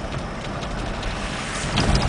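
Steady hiss of a car's tyres on wet pavement, heard from inside the moving car, with a low rumble swelling near the end.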